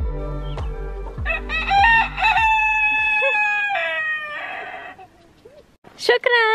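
A rooster crows once, starting about a second in: a long call that climbs, holds steady, then drops away at the end. Under it, background music with a steady low beat fades out.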